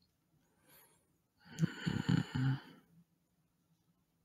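A man's breathy sigh, about a second and a half in and lasting just over a second, broken into a few voiced pulses. A faint breath comes before it.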